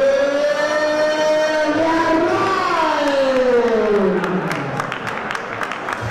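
A ring announcer's amplified voice stretching one call into a single long held note of about four seconds, its pitch sliding down and fading near the end, in the drawn-out style used to announce a fighter.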